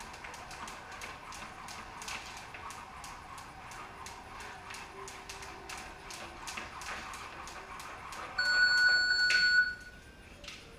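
Two jump ropes slapping the concrete floor, with feet landing, give a fast, uneven run of sharp clicks. Near the end an electronic timer beeps once, a single long steady tone, the loudest sound here, and the skipping stops.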